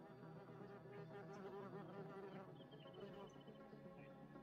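A flying insect buzzing faintly, its pitch wavering as it moves, over quiet steady ambient music.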